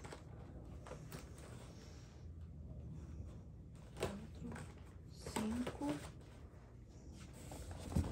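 Products being handled inside a cardboard shipping box: quiet rustling with a few light knocks of small boxed items against the carton.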